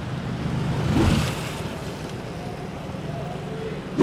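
Street ambience with a steady low traffic hum, and a vehicle passing about a second in, swelling and fading.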